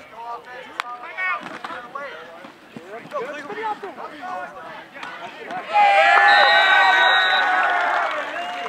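Spectators' voices and shouting during a football play. Then, about six seconds in, the crowd breaks into loud cheering as the touchdown run is scored.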